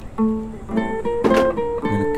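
Background film score: acoustic guitar playing a melody of plucked notes, each held briefly before the next.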